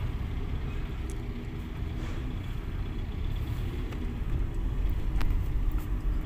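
Steady low rumble of a Toyota Vios's engine and tyres heard from inside the cabin as the car moves slowly through traffic. No clunk comes from the front strut mounts as the wheel turns; their seized bearing has just been replaced.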